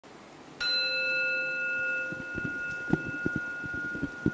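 A bell struck once, about half a second in, ringing on with several clear tones that slowly fade, the higher ones dying first. In the second half a few low knocks sound under the ringing.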